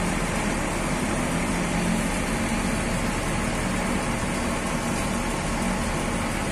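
Diesel coach engines idling steadily, a low, even hum under a steady rumble.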